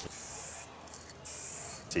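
Aerosol spray-paint can hissing as paint is sprayed onto a wall, in two bursts: the first about two-thirds of a second long, the second starting a little after a second in.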